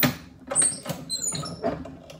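Heat press being closed on a t-shirt for a pre-press: a sharp click, then a few short knocks and high squeaks.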